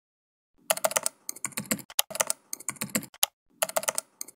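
Computer keyboard typing: quick runs of key clicks with short pauses between them, starting about half a second in.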